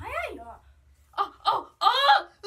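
A girl's excited wordless exclamation: a drawn-out vocal "ooh" that rises and then falls in pitch, then three short excited vocal bursts, the last and loudest near the end.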